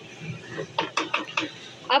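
Wooden spoon stirring a spiced liquid in a metal wok, scraping against the pan in a quick run of strokes about halfway through.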